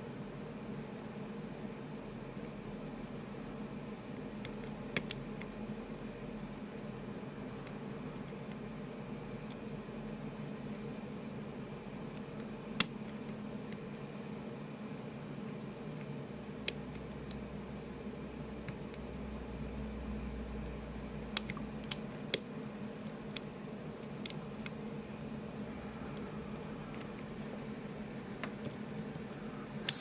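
A few sharp, isolated metallic ticks, several seconds apart with a small cluster about two-thirds of the way through, as a hook pick and tension wrench work the pin stack of an Assa Ruko Flexcore cylinder, over a steady low hum.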